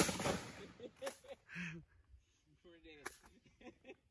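A single shotgun shot right at the start, its report ringing off for about half a second. A couple of faint sharp clicks and brief faint voices follow.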